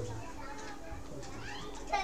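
Faint children's voices in the background of a room, with no nearer sound in the foreground.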